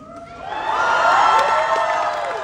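Concert audience cheering in many overlapping high voices, swelling about half a second in and starting to fade near the end.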